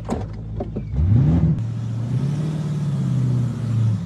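Car engine revving: its note climbs about a second in, then holds steady at higher revs.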